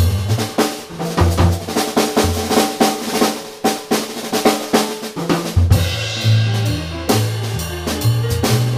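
Jazz drum kit playing a busy break of rapid snare, tom and bass-drum strokes. About six seconds in, the band comes back in under the drums with a walking bass line.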